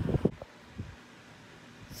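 A voice trails off at the very start, then faint steady background hiss: room tone.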